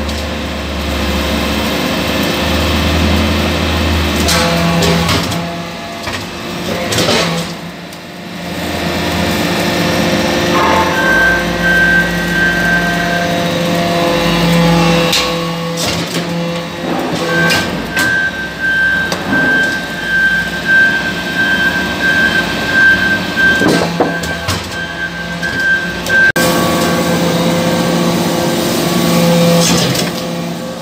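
Hydraulic metal-chip briquetting press running: a steady machine hum with occasional knocks, mixed with background music holding long tones.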